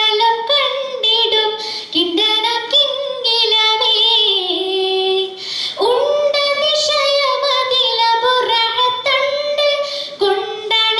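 A schoolgirl singing a Mappila song (Mappilappattu) solo into a microphone, the melody full of quick wavering ornaments. A little past halfway she breaks briefly for breath, then holds a long note.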